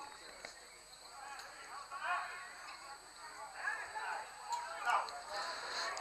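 Faint ambient sound from a football pitch: players' distant calls and shouts carrying across the field, a few at a time, over a steady faint hiss.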